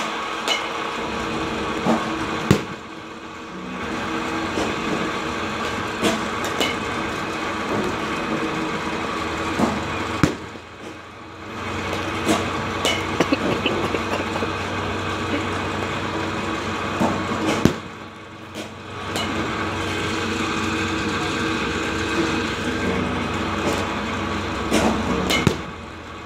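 Steady mechanical hum of batting-cage pitching machines, broken by sharp knocks every few seconds as softballs are batted and strike the cage.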